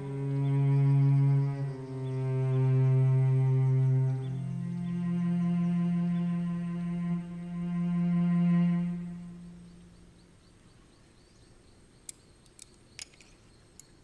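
Slow background music score of long, held low notes that change pitch a few times and fade out about ten seconds in. A few light clinks follow near the end.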